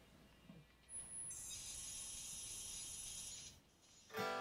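Faint, high, hissing data signal, starting about a second in with a brief thin high tone and cutting off suddenly just before the end. It is a TonePrint transfer sent magnetically from an iPhone's speaker into an electric guitar pickup and heard through the guitar amplifier.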